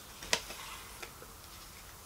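A cardboard subscription box being opened by hand: one sharp click about a third of a second in, then a few faint ticks as the lid comes away.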